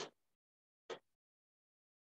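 Near silence, broken by two brief sounds about a second apart.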